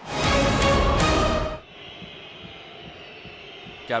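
A short, loud musical transition sting lasting about a second and a half, which cuts off sharply. Quieter steady stadium crowd noise follows.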